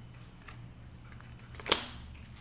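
A single sharp snap from an oracle card being handled, about three-quarters of the way in, over a faint low hum.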